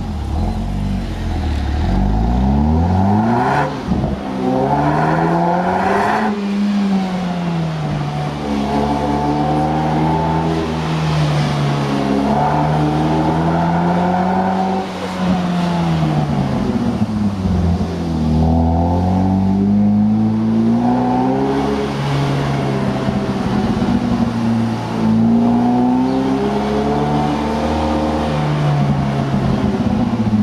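Opel Astra OPC's turbocharged four-cylinder engine and exhaust heard from the rear of the moving car. The engine note repeatedly climbs in pitch and then drops as the car accelerates and eases off, over steady road and wind noise.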